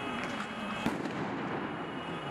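A firecracker goes off with a single sharp bang a little under a second in, over steady street noise.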